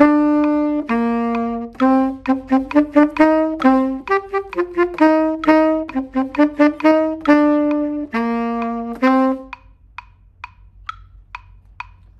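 Tenor saxophone playing a practice passage of held and short, detached notes with accents and staccato, over a metronome's steady click. The saxophone stops about three-quarters of the way through, leaving the metronome clicking about twice a second.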